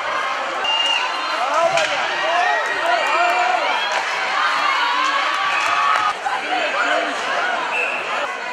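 Ice hockey game sound in a rink: many spectators and players shouting and calling over one another, with scattered sharp clacks from sticks and puck against the ice and boards.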